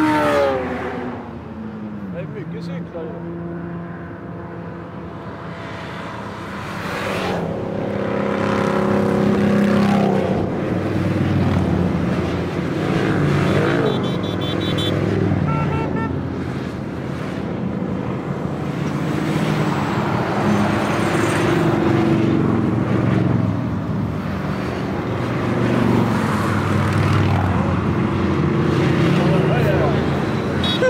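A car and then a long line of motorcycles passing one after another below, the engine sound swelling and fading as each goes by. The pitch falls as they pass, most clearly for the car in the first two seconds.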